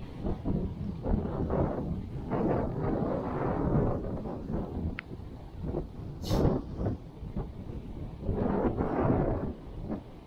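Wind buffeting the microphone in uneven gusts over the wash of small waves on a sandy beach, with a short sharp knock about six seconds in.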